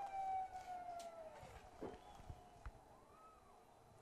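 Faint distant siren wailing: one tone whose pitch falls slowly over about two seconds, then rises and falls once more, more faintly, near the end. A few faint knocks sound in between.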